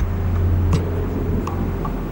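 A steady low rumble, with a faint click or two over it.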